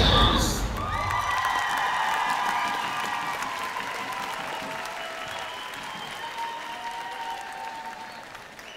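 Routine music cuts off about half a second in, and an arena crowd applauds and cheers, with long high-pitched shouts and screams over the clapping. The applause slowly dies down.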